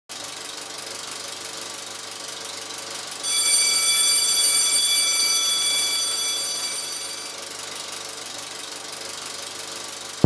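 Film projector running with a steady rapid clatter. A bright ringing tone comes in about three seconds in and fades away over the next four seconds.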